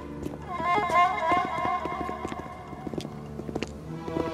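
Dramatic orchestral film score with a wavering bowed-string melody, over a rapid, irregular patter of many footsteps from several people moving together.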